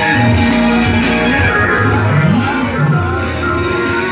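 Live instrumental music: guitar-like plucked notes over held bass notes, with a few sliding pitches.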